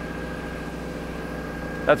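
Generator engine running steadily on the spray trailer: a constant hum with a faint, steady high whine over it.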